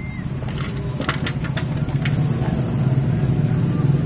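A motor vehicle engine running steadily close by, growing louder from about two seconds in. Several sharp clicks from the plastic packaging tray being handled in the first half.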